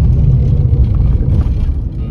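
Steady low road and engine rumble inside the cabin of a Maruti Suzuki Celerio hatchback driving along a road.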